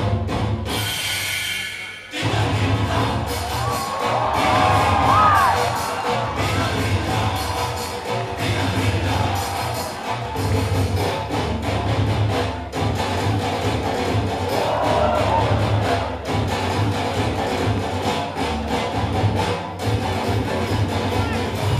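Loud dance-routine music mix with a heavy, steady bass beat. It breaks off briefly near the start under a hissing sweep, then the beat drops back in about two seconds in. An audience cheers over the music.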